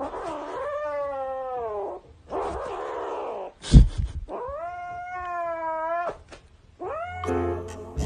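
A cat yowling in long, drawn-out calls, two of them well over a second each, with a stretch of breathy noise and a single thump between them: a cat guarding its toy from a reaching hand. Music starts near the end.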